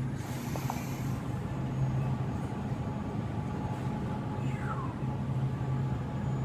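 Steady low hum of a supermarket's refrigerated dairy cases and air handling, with a faint falling tone about four and a half seconds in.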